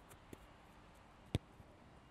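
A football being kicked: one sharp thud about a second and a half in, with a faint tap earlier, over a quiet background.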